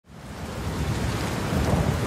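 A rushing, rumbling noise with no clear tone, swelling up from silence over the two seconds.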